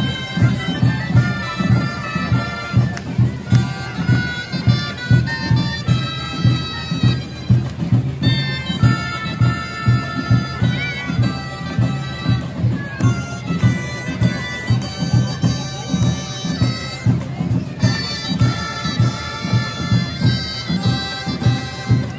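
A band of shrill reed woodwinds playing a festival melody over a steady drum beat.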